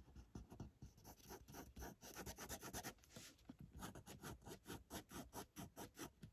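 Faint scratching of a 0.3 mm fine-liner pen nib on paper, quick short squiggling strokes, several a second, laying down texture in an ink sketch.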